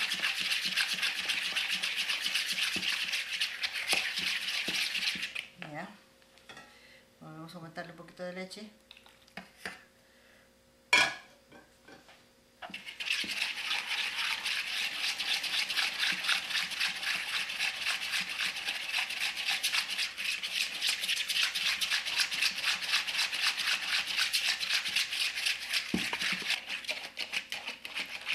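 Wire whisk beating a thin chocolate custard mixture of cocoa, cornstarch, sugar, egg yolk and milk in a plastic bowl: a fast, steady scraping rattle. It stops about five seconds in, with a sharp click about eleven seconds in, and starts again about thirteen seconds in.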